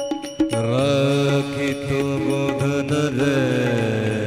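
A man sings a long, ornamented devotional bhajan line over a steady harmonium drone. The rhythm of ringing taal hand cymbals breaks off about half a second in.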